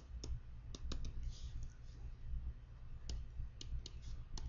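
Pen stylus tapping and scratching on a tablet computer screen while handwriting: a scatter of short, sharp clicks over a faint low hum.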